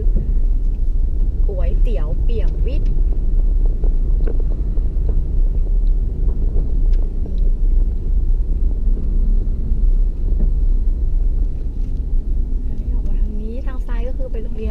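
Steady low rumble of a car's engine and tyres heard from inside the cabin as it moves slowly.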